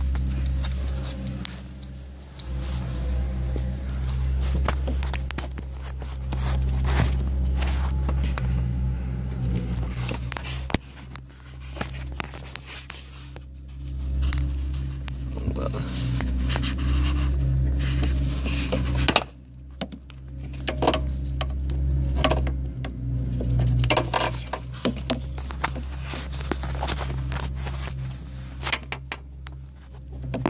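Handling noise from a camera being moved around: irregular scrapes and clicks over a steady low hum, which drops off suddenly about two-thirds of the way through.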